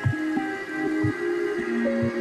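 Background music: steady pitched notes over a regular beat about twice a second.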